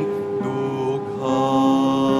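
Electronic keyboard playing slow held chords, moving to a new chord about a second in.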